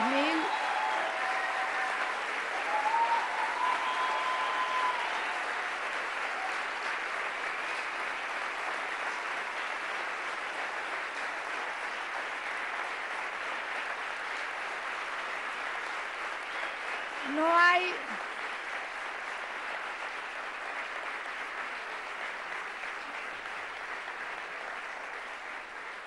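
A large audience applauding steadily, the clapping easing slightly toward the end. A single loud shout rises above it about two-thirds of the way through, with a fainter call near the start.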